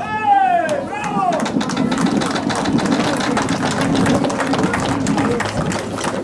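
Two long cries from a man's voice in the first second and a half, each rising briefly and then falling in pitch. They are followed by onlookers' murmur with scattered clicks and knocks.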